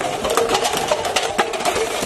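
Stacks of plastic party cups clattering as they are shoved and dumped into a car's interior: a rapid, irregular run of light clicks and knocks.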